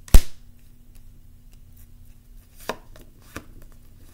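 A tarot card slapped down onto a hard tabletop: one loud, sharp smack just after the start. Two much softer taps follow a couple of seconds later as the cards are shifted.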